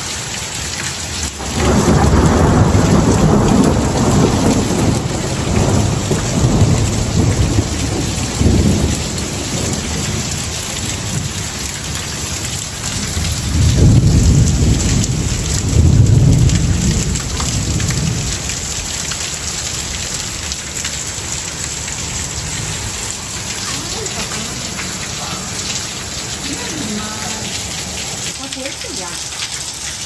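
Steady rain falling on the yard and patio roof, with water running off the roof edge. Two long rolls of thunder rumble over it: the first starts about a second and a half in and dies away over several seconds, and the second peaks near the middle.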